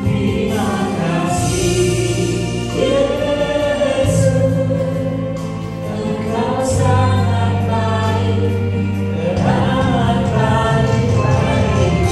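A man and a woman singing a slow worship song together through microphones, with long held notes, over an accompaniment of sustained low chords that change every few seconds.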